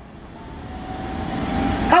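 Road traffic: a passing vehicle's engine and tyre noise growing steadily louder, with a faint steady whine.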